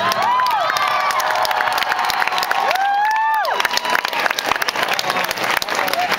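Concert audience applauding and cheering at the end of a song: dense clapping with two long high whoops from the crowd, one right at the start and one about three seconds in.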